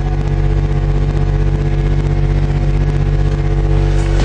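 Four Bose 5.2 subwoofers in a ported enclosure playing one loud, steady low bass note, held for several seconds with no beat.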